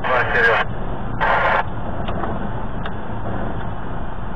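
Steady engine and road rumble inside a moving vehicle's cab, with two short bursts of a voice in the first two seconds.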